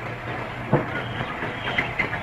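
Steady hum and hiss of a worn old film soundtrack, with a single sharp click about three quarters of a second in.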